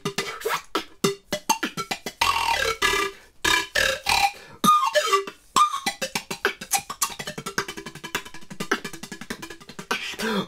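Peruvian pan flute played with beatboxing: breathy pitched notes, some sliding in pitch, mixed with sharp percussive mouth beats blown across the pipes. In the second half the beats settle into a quick, even pulse.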